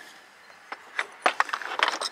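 Ceramic salt and pepper shakers clinking and knocking against each other as a hand picks through a box of them: a few sharp clicks about a second in, then a quick cluster near the end.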